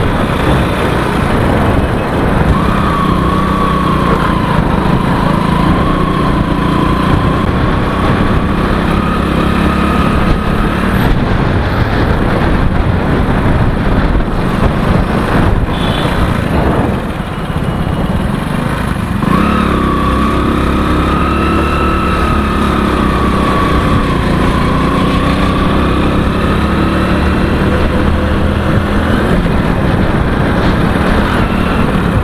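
Motorcycle engine running as it is ridden along a highway, its note wavering with speed. About halfway through it eases off briefly, then picks up again with a rising note.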